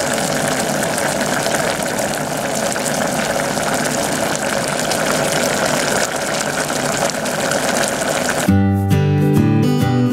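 Nikujaga's mirin-and-soy cooking liquid bubbling steadily in an open stainless steel pot over medium heat as it boils down to a glaze. Acoustic guitar music comes in near the end.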